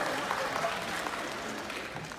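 Audience applause and crowd noise, fading gradually.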